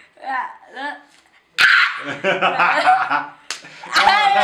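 A boy's short cries, then, about a second and a half in, a loud high yelp running into laughter as he pulls a pore strip off his nose, with people laughing along. A sharp smack comes just before the yelp, and another near the end.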